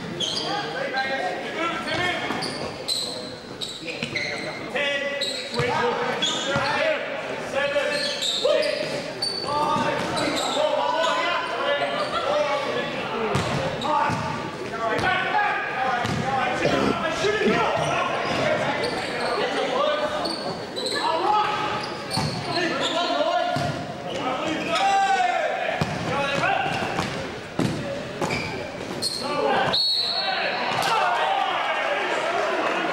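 Basketball bouncing on a wooden gym court, with sharp knocks throughout, among players' and spectators' voices calling out, all echoing in a large hall.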